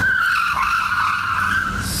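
Tyres of a Jeep Cherokee squealing on asphalt in one long squeal of nearly two seconds, the pitch sagging a little in the middle. The SUV's steering is being wrenched hard while it is moving by spoofed parking-assist CAN messages, making it turn sharply enough to leave skid marks.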